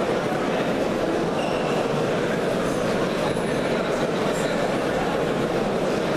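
Steady, even din of a crowded sports hall, with no distinct voices or knocks standing out.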